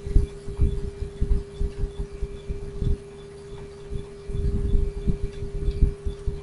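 A steady hum with irregular low thumps and rumbles that come in clusters, heaviest near the start and again in the last couple of seconds.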